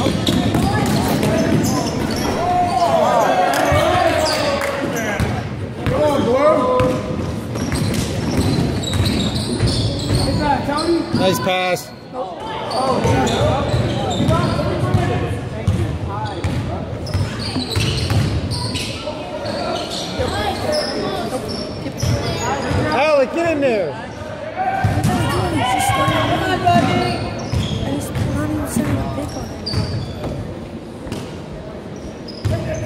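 Basketball bouncing on a gym's hardwood floor, with players and spectators calling out, all echoing in a large gymnasium.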